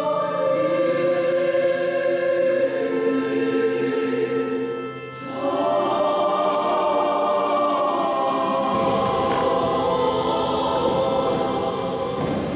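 Church choir singing a slow requiem hymn of the Armenian Apostolic service in long held notes, with a short break about five seconds in before the next phrase begins.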